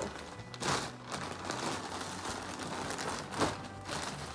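Thin plastic shopping bag crinkling as hands rummage in it, with a louder rustle shortly after the start and another near the end.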